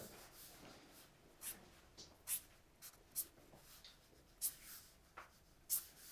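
Felt-tip marker drawing lines on paper: a series of about ten short, faint scratchy strokes.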